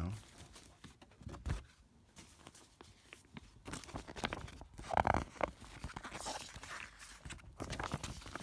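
Paper documents and a plastic sheet protector being handled and rustled, with scattered small clicks and a louder crinkle about five seconds in.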